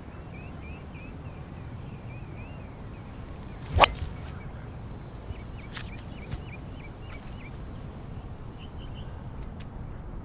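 A driver strikes a golf ball off the tee: one sharp crack about four seconds in. Birds chirp throughout.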